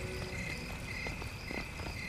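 Night ambience of chirping insects: short high chirps repeating a few times a second over a steady high trill.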